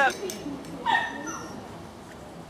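A dog gives one short, high-pitched bark about a second in.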